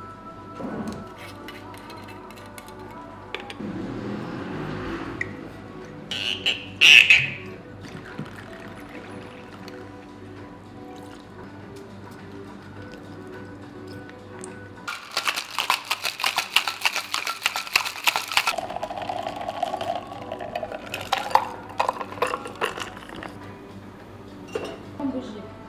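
Background music over cocktail-making sounds: a cocktail shaker rattles rapidly with ice for about three and a half seconds past the middle, followed by the drink being poured. A short, loud hiss comes about seven seconds in.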